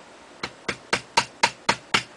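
Tack hammer tapping on a dowel rod set in the muzzle of a Finnish M39 rifle barrel: seven evenly spaced strikes, about four a second, starting about half a second in. The taps drive a soft lead ball down the bore to swage it into a slug for measuring bore diameter.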